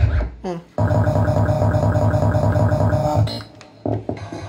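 Music with a steady beat playing from a Philips NX-series tower party speaker while its built-in DJ effects are switched. The music cuts out for a moment under a second in, comes back with the beat, and drops away again near the end.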